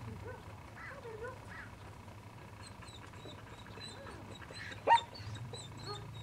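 A dog gives one short, sharp bark about five seconds in, with faint bird chirps in the background.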